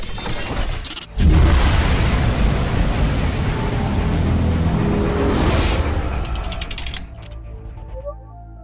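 Rocket-launch sound effect in an animated intro: a loud rushing noise with a deep rumble that starts suddenly about a second in and dies away near the end, mixed with intro music.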